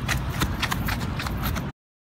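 Hurried footsteps, a quick irregular run of knocks and scuffs, that cut off suddenly into silence near the end.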